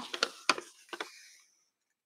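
A sheet of paper being handled and moved: a few short, soft clicks and rustles, stopping about one and a half seconds in.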